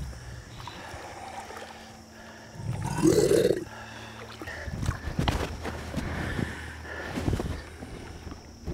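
A saltwater crocodile held on a rope in muddy shallows gives one loud growl lasting about a second, three seconds in. A few fainter knocks and splashes follow.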